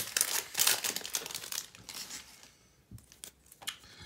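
Plastic wrapper of a baseball card pack crinkling and tearing as it is pulled open, then a few light clicks as the cards are handled near the end.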